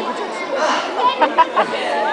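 Audience chatter: many voices talking and calling out at once, with a few sharp clicks a little after a second in.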